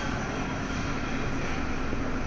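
Mobile electric scissor lift lowering its platform: a steady hum with hiss from the hydraulics as the scissor stack comes down.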